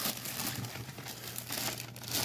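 Plastic shipping bag crinkling and rustling as hands pull it open.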